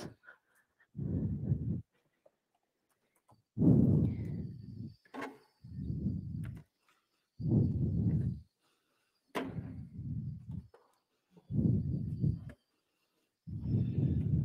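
A person breathing slowly and steadily close to a microphone, with a soft rush of air about every one and a half to two seconds, seven breaths in all. There are a couple of faint clicks between breaths.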